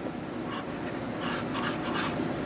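Steady low room hum with a few faint scratchy sounds.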